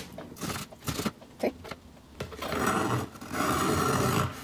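Chef's knife chopping green onions on a cutting board in a few sharp taps, then the blade scraping across the board twice, about a second each, as the chopped onion is gathered up.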